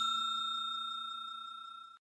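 Ringing tail of a bell 'ding' sound effect, fading steadily with a slight pulsing, then cut off suddenly at the end.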